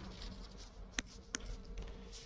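Faint low steady buzzing hum with a few light clicks: a stylus tapping on a tablet screen as a word is handwritten.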